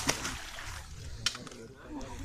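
Water splashing and dripping as a fish is lifted out of the pond in a landing net, fading within the first half second. A single sharp click follows a little past a second in.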